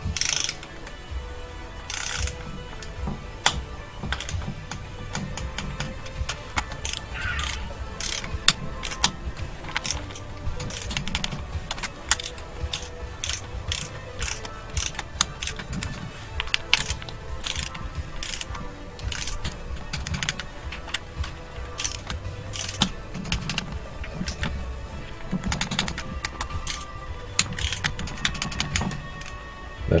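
A socket wrench ratcheting in irregular runs of quick clicks as the valve cover bolts on a Subaru EJ253 engine are run down and tightened.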